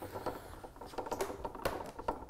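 Light, irregular clicks and taps as a metal handrail is manoeuvred over a column scale's head and lined up on its platform, with one slightly louder knock near the end.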